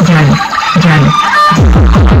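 Loud electronic DJ dance music played over a sound system: the fast deep bass kicks drop out for a short break of about a second and a half, filled by a few slower falling low tones, then the kicks come back in near the end.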